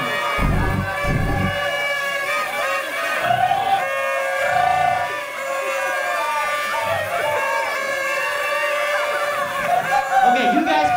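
Crowd of partygoers shouting and cheering all at once, with paper party horns being blown among them. There are a few low thuds about half a second to a second and a half in.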